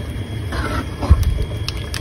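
Wooden spatula stirring thick pork curry in a heavy black pot, with a few light knocks against the pot over a low rumbling.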